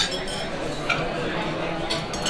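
Restaurant dining-room background: a low murmur of voices with a couple of light clinks of cutlery against plates.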